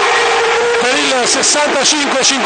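A man commentating in Italian: a long, drawn-out vowel held on one pitch, then the score called out.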